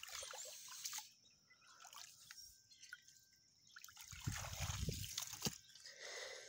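Faint trickling and dripping of water, scattered small drips, with a low rumble from about four seconds in.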